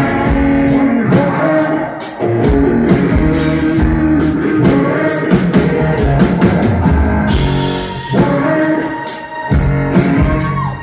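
Live rock band playing loudly, a drum kit keeping a steady beat under guitar and keyboards, heard from within the audience.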